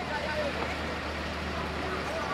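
Fire engine pump running with a steady low hum, under a continuous rushing noise from the blazing warehouse fire and the high-pressure hose stream.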